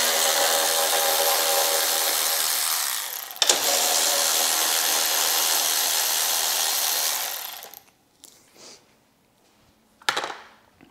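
Handheld cordless power tool spinning out the motorcycle's 13 mm gas-tank mounting bolts: a steady motor whine for about three seconds that winds down, a sharp click, then a second run of about four seconds that fades out.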